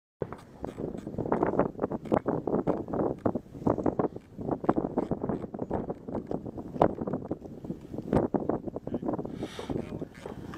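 Indistinct voices talking, with wind rumbling on the microphone.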